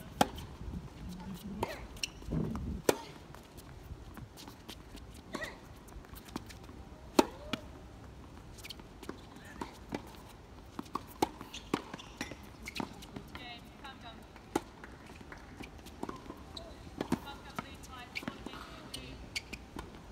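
Tennis rally on an outdoor hard court: sharp pops of a tennis ball struck by racket strings and bouncing on the court, one every second or two, with the players' shoes scuffing between shots.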